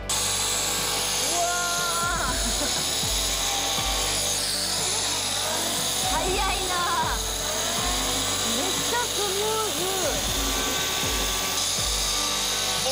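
Handheld electric round-knife cutter running steadily, its motor and spinning circular blade whirring as it slices through racing-suit leather along the marked pattern. Faint voices come through over the machine noise.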